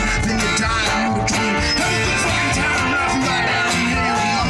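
Live band playing with acoustic guitar, accordion and drum kit, a singer's voice over a steady beat.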